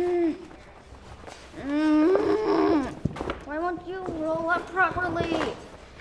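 A child's voice: a long drawn-out vocal sound about a second and a half in, then a couple of seconds of broken, speech-like vocalising, with a few light knocks.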